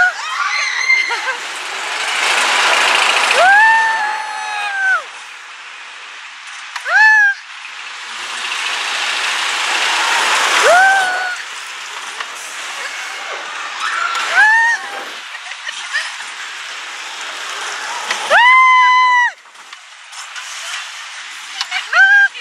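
Goofy's Sky School wild mouse roller coaster car running along its track, the rush of wheels and wind rising and falling through the turns. It is broken by about five short high screams from the riders, the longest near the end.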